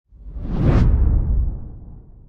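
A whoosh sound effect with a deep rumble underneath, swelling to a peak just under a second in and then fading away.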